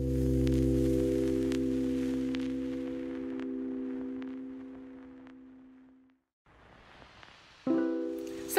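Background music: a held chord that fades out about six seconds in, then a new chord starts near the end.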